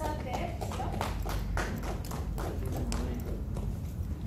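Scattered hand clapping from a small group, the individual claps sharp and distinct, irregularly spaced, with voices among them.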